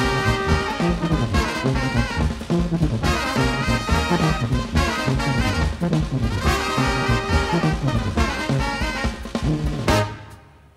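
Live brass band playing: trombones, trumpet and saxophone over a sousaphone bass line and drum kit, with the horns and a rhythmic low bass line sounding together.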